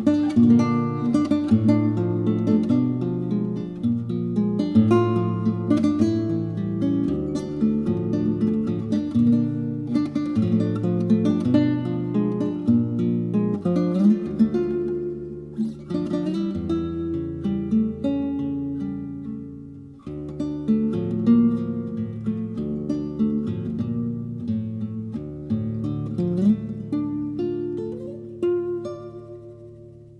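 Solo classical guitar playing a tango arrangement, a plucked bass line under the melody. The playing dies away near the end.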